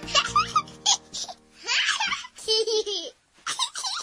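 Young children laughing and giggling in several short bouts, while background music fades out near the start.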